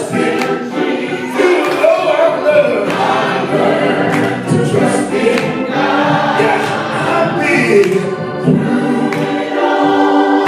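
Live gospel singing by a soloist and small group of backing vocalists, voices held together over sustained keyboard chords.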